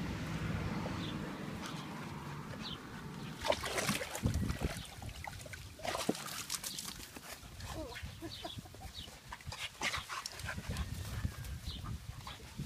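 Dogs playing and moving about, with scattered short knocks and rustles.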